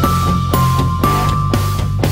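Background music with a steady beat, about two beats a second, under a long held note.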